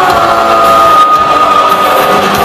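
Heavy metal band playing live: electric guitars, bass and drums, loud and dense, with one long held high note through most of it.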